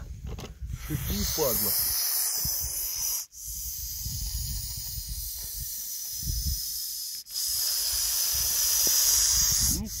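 A snake hissing in defence with its mouth gaping: a long, steady hiss drawn out in three stretches, each broken by a brief gap about three and seven seconds in.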